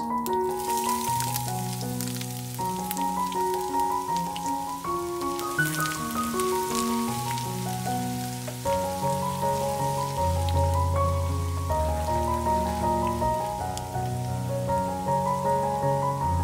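Chopped ginger sizzling in hot oil in a frying pan as it is added and stirred, over background music. The sizzle starts suddenly and is strongest for the first several seconds, then sinks beneath the music.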